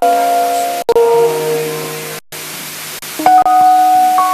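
Background music of held chords on a keyboard instrument over a steady hiss. The chord changes about a second in and again near the end, with a brief break in between.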